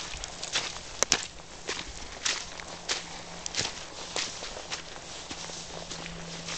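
Footsteps in snow, irregular steps every half second or so. Two sharp clicks about a second in are the loudest sounds.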